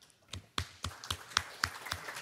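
Scattered audience applause: separate hand claps at about four a second, starting about a third of a second in.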